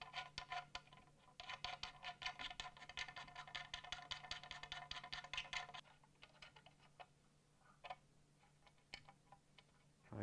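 Rapid ticking of metal bridge-post height thumbwheels being spun by hand along their threaded studs, each tick ringing at the same few pitches. It stops about six seconds in, followed by a few scattered clicks of the hardware being handled.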